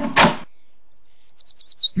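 A door sound, two short noisy bursts in the first half-second. Then a bird chirping: a quick run of short, high chirps, about ten a second, falling slightly in pitch.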